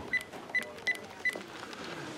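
Cordless phone handset being dialled: four short, high keypad beeps, each with a button click, about a third of a second apart.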